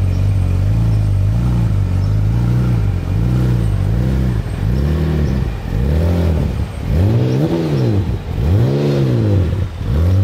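Radical RXC Turbo 500's 3.5-litre twin-turbo Ford EcoBoost V6 revved repeatedly while standing still: short quick throttle blips about once a second, then from about halfway in several bigger rises and falls in revs, dropping back to idle at the end.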